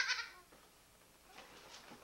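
A young girl's high-pitched, laughing squeal that stops about a quarter second in, followed by a quiet stretch.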